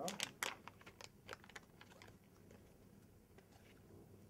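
IV catheter's sterile peel-pack being opened by gloved hands: a quick run of sharp crackles and clicks in the first second and a half, then a few faint ticks.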